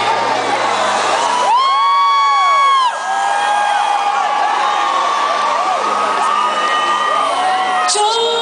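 Concert crowd cheering and screaming. About one and a half seconds in, a single high scream from someone close by rises above the crowd, held for over a second, and other shorter cries follow.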